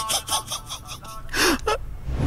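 A person's breathy gasps, a quick run of them at first, then two short voiced breaths about one and a half seconds in.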